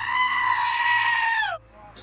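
A black-faced sheep giving one long, loud, human-like scream of a bleat that holds its pitch and drops away at the end.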